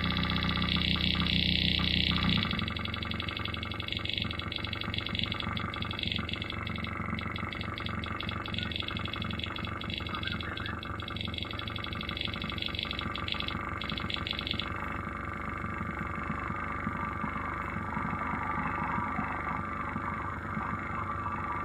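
Experimental electronic music from a patch-cabled electronics setup: a dense drone of many steady tones, its upper tones chopped by rapid stuttering breaks. A loud low drone cuts out about two seconds in, and near the end the high tones fade into a rougher, noisier mid-range texture.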